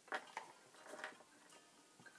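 Faint taps and scratches of a felt-tip marker dotting and drawing on a paper towel, a few short clicks near the start, over quiet background music.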